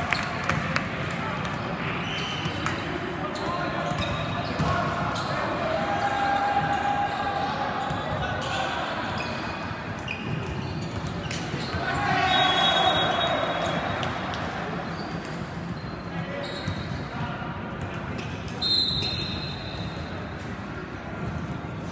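Echoing din of a volleyball gym: indistinct voices of players and spectators, with frequent thuds of balls being hit and bouncing on the courts. The voices swell louder about twelve seconds in, and a short high referee's whistle sounds near the end.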